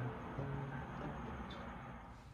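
Background music fading out.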